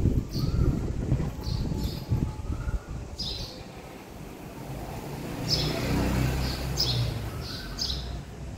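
Small birds chirping repeatedly in short high calls, some with short rising notes, over a low rumble that swells in the second half.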